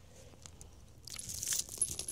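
Light metallic jingling with rustling, starting about a second in after a quieter moment.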